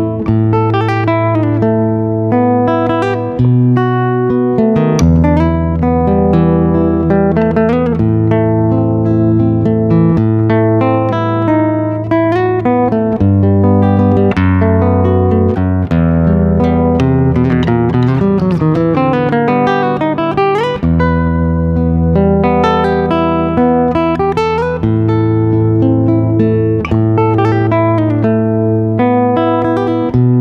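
A Barclay nylon-string cutaway classical guitar, played fingerstyle through its onboard EQ pickup into a loudspeaker. It plays a picked melody and arpeggios over held bass notes that change every few seconds. The tone is very clear, with no hiss.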